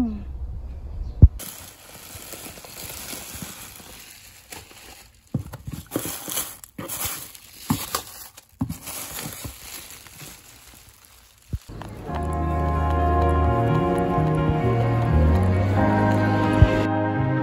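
Bubble wrap and a cardboard box being handled and unpacked: rustling and crinkling with irregular sharp crackles. About twelve seconds in, soft background music takes over.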